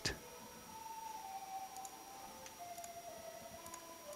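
Faint background: a soft sustained tone that steps down in pitch in several stages, a thin steady high whine, and a few light clicks.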